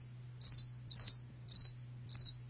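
A cricket chirping, a short high chirp about every half second, over a low steady hum: the stock "crickets" gag for an awkward silence after an unanswered question.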